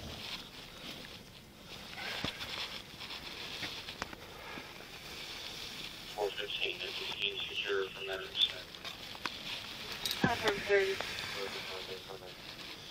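Faint, indistinct voices, heard twice in the second half, with a few scattered clicks over a steady hiss.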